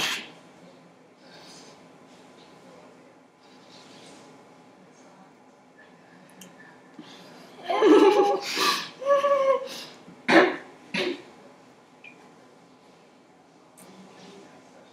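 A person with a mouthful of dry ground cinnamon: several seconds of faint breathing, then a short muffled vocal outburst about eight seconds in, followed by two sharp coughs about half a second apart.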